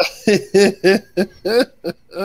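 A man laughing hard in a quick string of loud, breathy bursts, about seven in two seconds.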